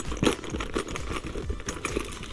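Hands rummaging inside a small leather handbag: leather rustling, with a run of small irregular clicks and clinks as keys and other items are moved about.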